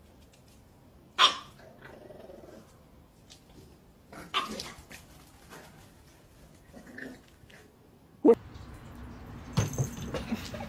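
A dog barking in a few short, separate outbursts with pauses between, the sharpest about a second in and near the end.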